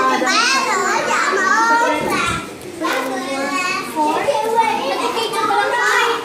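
Several young children's high voices chattering and calling out over one another, with a brief lull about two seconds in.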